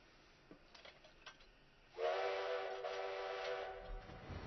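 Steam locomotive whistle blowing one long blast, a chord of several steady notes that starts suddenly about halfway in, sliding up a little as it opens. Before it, near quiet with a few faint clicks.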